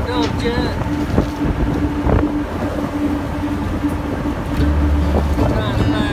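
Fishing trawler's engine running steadily, with wind on the microphone; a deeper low rumble joins about four and a half seconds in.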